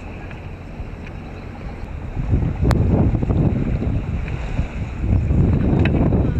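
Wind buffeting the camera's microphone as it is held just above open sea water, with water lapping close by; the rumble grows louder a little over two seconds in, with one brief sharp click soon after.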